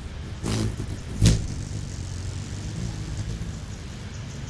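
Hummingbird wings whirring close past the microphone in two quick fly-bys, the second a little after a second in, louder and sharper, followed by a low steady wing hum.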